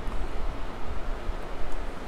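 Low, uneven rumbling noise on the microphone, with no distinct clicks or knocks.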